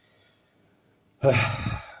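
A man sighs once, heavily: a long, breathy, partly voiced exhale that starts a little over a second in and trails off.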